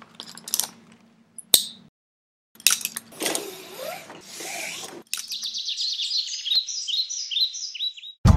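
Sound effects: a few sharp clicks, then a rush of noise lasting a couple of seconds, then a fast run of short, high, bird-like chirps filling the last three seconds.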